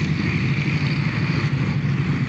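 Tanks driving past, a steady low engine and track noise.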